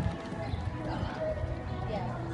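A horse's hoofbeats, dull thuds on the sand arena as it canters away after landing from a jump, with people talking in the background.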